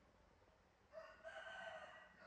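A rooster crowing, one drawn-out crow that starts about a second in after near silence.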